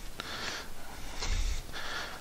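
A man breathing close to a headset microphone while bent over, a couple of breaths, with a faint click near the start.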